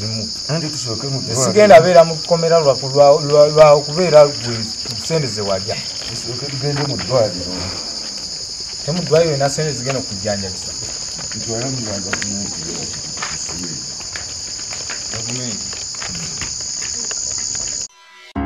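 A steady, unbroken chorus of crickets, with voices talking over it during the first few seconds and again around nine to eleven seconds in. The cricket sound cuts off just before the end.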